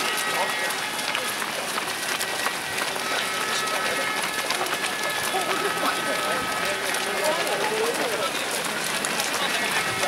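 Footsteps of a large pack of runners on wet asphalt, a steady mass of shoe slaps and splashes, with voices from the crowd.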